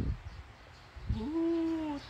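A low thump right at the start, then about a second in a single held, whining vocal note lasting just under a second, steady in pitch and dipping slightly at its end.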